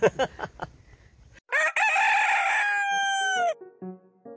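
A rooster crowing once, a single crow of about two seconds that drops in pitch at its end. It cuts in sharply after a burst of laughter, and a few piano notes begin near the end.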